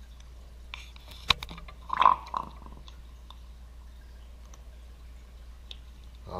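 A metal plastisol injector being pulled from an aluminium bait mold and set down in its cup: a sharp click about a second in, then a clunk with a short ring about two seconds in, over a low steady hum.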